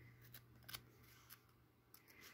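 Near silence, with a few faint, short paper ticks from the glossy pages of a catalog being handled.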